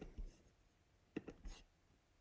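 Near silence with a few faint clicks just over a second in: a computer mouse clicking a menu item.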